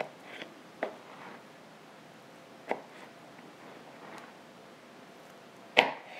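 Knife cutting through a chilled cheesecake and knocking on a plastic cutting board: a few short, sharp knocks spaced out, the loudest near the end.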